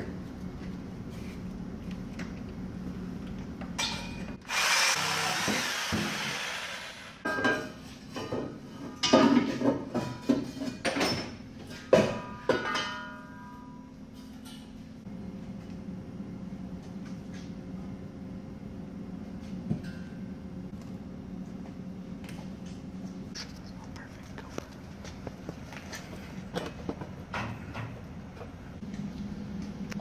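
Power tool cutting through the steel exhaust pipe, in several bursts with the longest and loudest around five seconds in. A low steady hum fills the second half.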